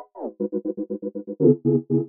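Synth chord loop chopped by a stutter effect into rapid, even repeats of about ten a second, with a quick downward pitch bend just after the start.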